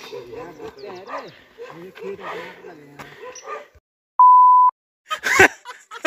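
Voices, then a little past halfway a loud half-second pure beep at one steady pitch, set in dead silence either side: an editing bleep laid over the audio, as used to censor a word.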